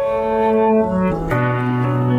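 Instrumental worship music led by piano, playing sustained chords with no singing. The bass steps down and a new chord is struck a little past halfway.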